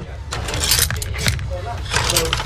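Metal knives clinking and rattling against each other as a hand rummages through a metal box of them, a quick run of sharp clinks.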